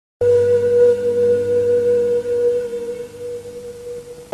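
A steady electronic test tone of one unchanging pitch, with a low hum under it. It starts just after the beginning and holds until it stops at the end.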